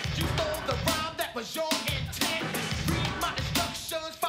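A song with a heavy drum beat, bass and vocals playing loudly.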